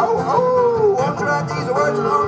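A singer howls like a dog, a sliding wail that falls in pitch, over a bluegrass band of mandolin, banjo and acoustic guitar still playing.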